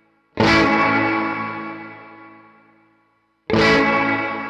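An electric guitar played through a Fender Mustang GTX100 modeling amp set to its '63 Spring reverb model. A chord is strummed about half a second in and again near the end, and each is left to ring and fade away slowly.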